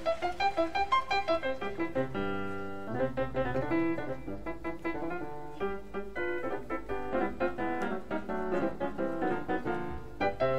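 Grand piano playing a jazz improvisation: quick successions of struck notes, with a chord held for about a second starting about two seconds in.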